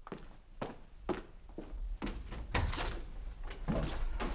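A run of sharp knocks or thuds, about two a second, growing louder toward the end.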